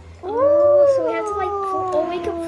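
A long drawn-out vocal "ooooh" held for over two seconds, rising at first and then slowly falling in pitch.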